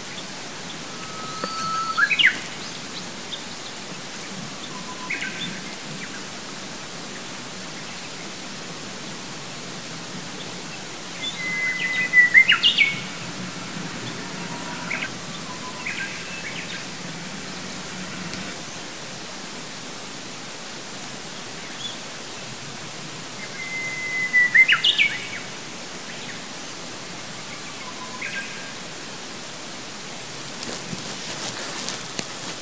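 A songbird singing three phrases about ten to twelve seconds apart. Each phrase is a held whistled note followed by a quick flourish of higher notes. Fainter short bird notes come in between, over a steady outdoor hiss.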